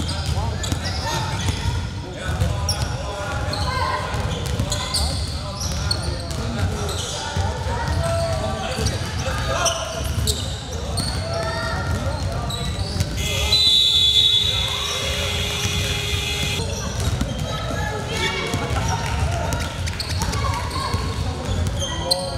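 Basketball game on a hardwood gym court: a ball dribbling, players' footwork and voices calling out, echoing in the large hall. Past the middle, a steady tone sounds for about three and a half seconds.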